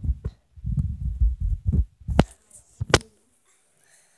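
Handling noise from a phone: muffled low thumping and rubbing against its microphone, then two sharp taps, about two and three seconds in.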